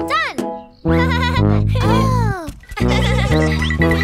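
Children's cartoon music with sliding, wobbling effect tones over it: a quick rise-and-fall right at the start, a warbling stretch about a second in, then a downward slide.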